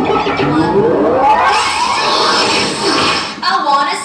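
A group of young children's voices: a rising group shout in the first second or so, then a jumble of many overlapping voices and squeals.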